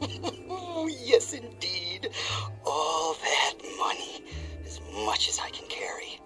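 A man's voice, not forming clear words, over background music with held low notes that change every two seconds or so.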